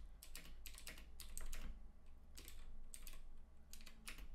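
Typing on a computer keyboard: an uneven run of key clicks with a brief pause midway.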